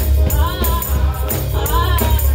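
Live gospel music: a choir of voices singing a phrase over heavy bass and drums, with a steady beat of high percussive hits.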